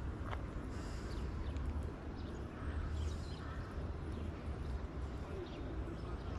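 Quiet outdoor background: a steady low rumble with a few faint, short bird chirps.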